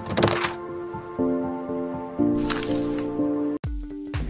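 Animated-logo intro jingle: sustained synth chords that change about every second, with whoosh effects sweeping through, cutting off abruptly near the end.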